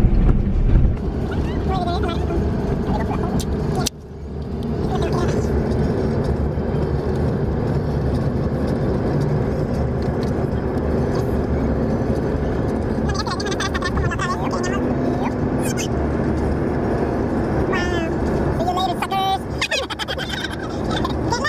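Steady road and engine noise heard inside a moving vehicle's cabin, with a brief drop about four seconds in. Faint voices come and go under the noise.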